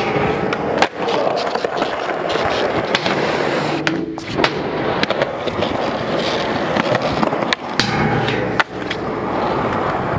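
Skateboard wheels rolling over a rough concrete skatepark surface in a continuous gritty rumble. Several sharp clacks of the board striking the ground or ledge cut through it, near the start, around the middle and late on.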